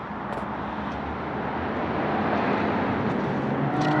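A motor vehicle passing by, its noise growing gradually louder.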